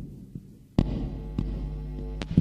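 Instrumental music: a low, sustained bass drone broken by sparse heavy percussive hits, the loudest a little under a second in and another at about a second and a half.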